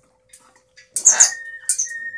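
Blue-and-gold macaw giving a short, harsh call about a second in, trailing off into a thin steady tone, over a faint steady hum.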